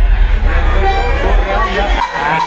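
Live cumbia band playing in a bar, with a steady heavy bass and a short held reedy note about a second in, under crowd chatter and voices.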